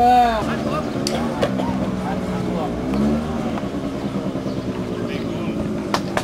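Overlapping shouts and calls from beach-football players and onlookers, with a loud call at the start and a steady low drone under the voices. Two sharp knocks about a second in.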